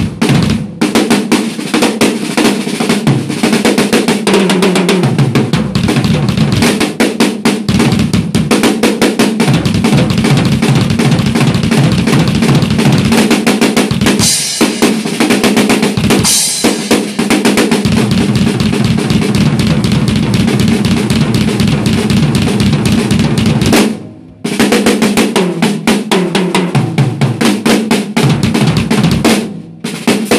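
Drum kit played solo: fast, busy strokes and rolls on snare and toms over bass drum. Two cymbal crashes ring out about halfway through, and the playing stops briefly about three quarters of the way through before carrying on.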